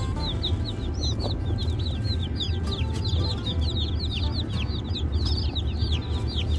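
A boxful of day-old Freedom Ranger chicks peeping without pause inside their ventilated cardboard shipping box: many short, falling peeps overlapping, over a steady low rumble.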